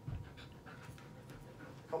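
A Siberian husky panting in short, faint breaths, with a soft low thump at the start.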